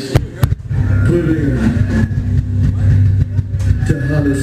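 Two sharp clicks through the club's PA, then a loud, steady low rumbling drone from the band's amplified stage gear, with a few wavering tones above it.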